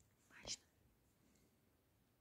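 Near silence, with one short breathy sound about half a second in, like a quick breath or whisper.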